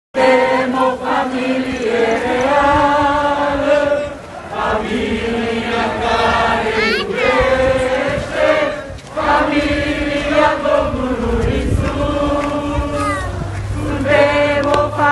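A group of voices singing a slow, chant-like melody together, in long held notes, with short breaks between phrases.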